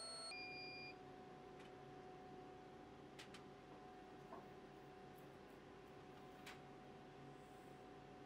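Near silence: faint steady room hum, with a short high beep in the first second and a few faint ticks.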